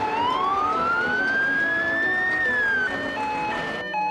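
Fire engine siren sounding one slow wail that rises for about two seconds, then falls and cuts off about three seconds in.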